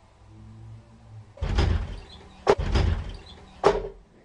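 A door banging and rattling hard in three loud bursts, each about half a second long, the second and third starting with a sharp crack. A faint low hum comes before them.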